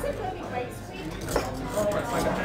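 Two sharp clinks of barware and ice, about a second and a half apart, over low voices.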